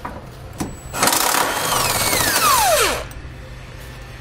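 Cordless power wrench turning a 15 mm socket to back a bolt out of the frame rail: it runs for about two seconds, then its pitch falls away as the motor spins down.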